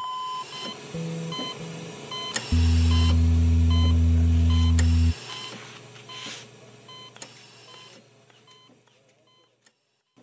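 Hospital heart monitor beeping at a steady rhythm, about one and a half beeps a second, dying away toward the end. A steady tone cuts off about half a second in. A loud deep drone sounds under the beeps from about two and a half to five seconds in.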